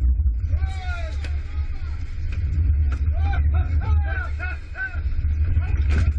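Heavy, steady low rumble of a sport-fishing boat running at sea, with several men shouting excitedly in drawn-out rising and falling calls from about half a second in.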